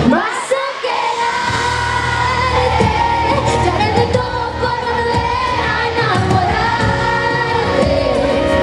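A female pop singer singing live into a handheld microphone over a full band. The bass and drums drop out briefly at the start and come back in about a second in.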